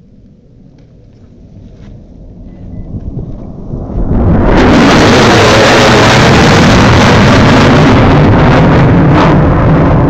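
B-1B Lancer bomber's four F101 turbofan engines passing low overhead at speed: jet noise builds from faint to very loud about four seconds in and stays loud.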